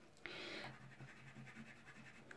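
A brief, faint scratch of soft pastel being worked on paper, about a quarter second in.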